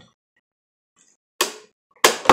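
Near quiet, then one short sharp plastic click about one and a half seconds in from the Pie Face toy's hand-cranked spring mechanism as the handle is turned.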